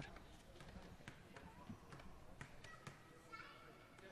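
Near silence: faint stadium background with a few soft taps and faint distant voices.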